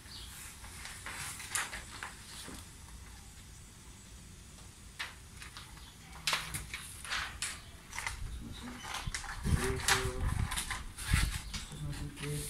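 Plastic window tint film crinkling and rustling in short, irregular crackles as it is handled and pressed against a car door window. There are a few dull bumps and a brief low murmur of a voice near the end.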